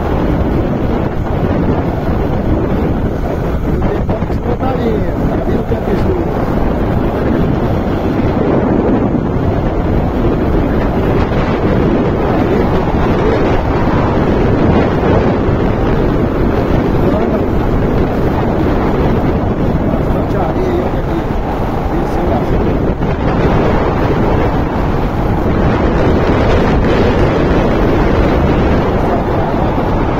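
Loud, steady wind rush on the microphone of a moving Honda Bros 150 motorcycle, with its single-cylinder engine running underneath.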